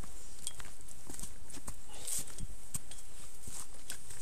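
Irregular clicks and knocks of steps and loose stones on a rocky trail, over a steady low rumble.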